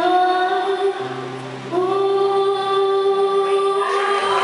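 Young female singer's amplified voice, through a microphone, rising into one long held note about halfway through over a steady backing chord, the closing note of the song.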